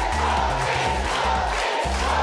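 Studio audience cheering and clapping over music with sustained bass notes.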